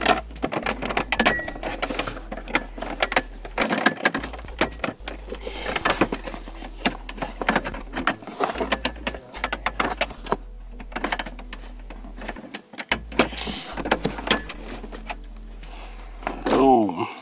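Plastic lower dash trim panel being worked loose and pulled down by hand: a busy run of clicks, knocks and rattles of plastic, with rustling from handling.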